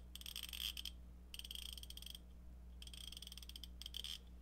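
Koken Zeal 3/8" drive 72-tooth flex-head ratchet being cycled by hand. It gives three short runs of fast, fine clicking from its fine-tooth dual-pawl mechanism, with brief pauses between them.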